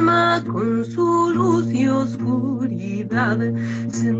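A woman singing a chant-like mantra in a clear, sustained voice, accompanied by acoustic guitar over a steady low drone.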